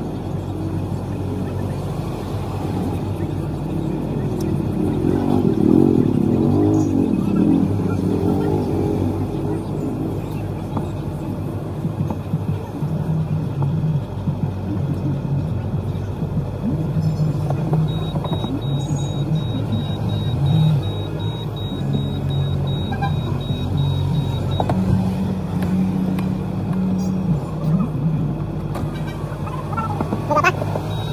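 Busy city street ambience: vehicle and motorcycle engines running, passers-by talking, and music playing.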